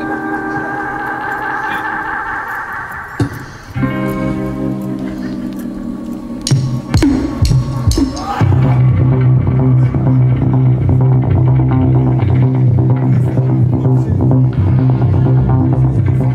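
Live rock band starting a song: electric guitar rings out sustained chords, a few drum hits come in around six to eight seconds in, and from about eight seconds the full band plays a steady, driving beat with a loud bass line.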